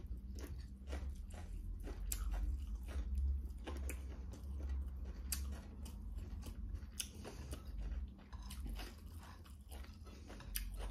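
A person chewing food close to the microphone, with irregular sharp clicks and smacks, and fingers mixing rice on a ceramic plate. A steady low hum runs underneath.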